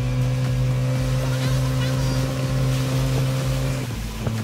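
Small open boat's motor running steadily under way, a constant low drone over the water.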